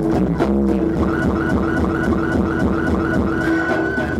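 Electronic dance music played live on a Roland keyboard synthesizer: a held low synth tone under a repeating figure of short high notes, about four a second, that ends in one long held note.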